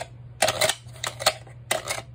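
Sharp clicks and knocks of a pistol being handled in a Safariland 6304RDS polymer duty holster: a quick cluster about half a second in, one more a little after a second, and two near the end.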